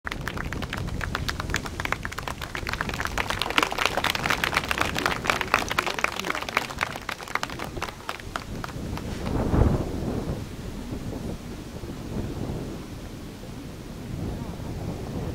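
Audience applauding, dense at first and thinning out about eight or nine seconds in, followed by a brief low rumble of wind on the microphone.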